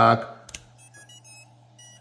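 A sharp click as the 18650 cell seats in its holder, then a quick run of short electronic beeps at changing pitches and another beep near the end: the toothpick drone's ESC startup tones, played through its motors, as the cell powers it up.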